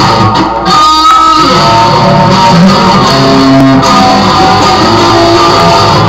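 Electric guitar being played: a continuous run of notes and chords, with a held high note about a second in.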